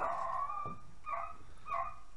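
Dogs barking: one drawn-out bark, then two short barks a little over half a second apart.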